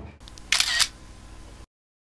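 Phone camera shutter sound as a photo is taken: one short click about half a second in, over a faint background. The sound cuts to dead silence shortly before the end.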